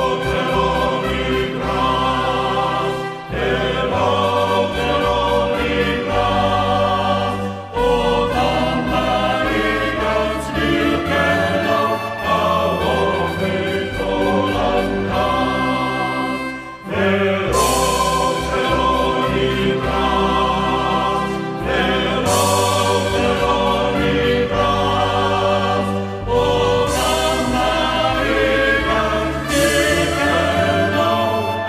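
Background music: a choir singing sustained chords over held low notes.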